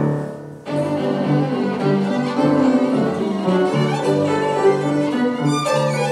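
Violin playing with piano accompaniment. A held note dies away in the first half-second, there is a brief pause, and then a new passage of moving notes begins.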